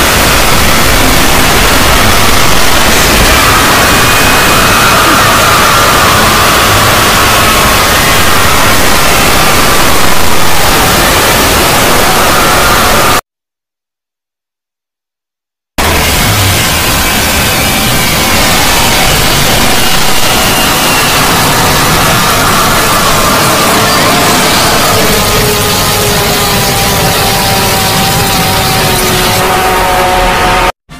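Loud, harsh static-like noise with faint wavering, slowly falling tones of distorted music buried in it: the heavily distorted logo audio of a horror-style logo edit. The noise cuts to dead silence for about two and a half seconds about thirteen seconds in, then returns.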